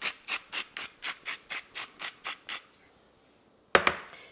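Salt being dispensed over a dish of raw chicken pieces in about eleven quick strokes, roughly four a second, stopping near three seconds in. One sharp knock just before the end.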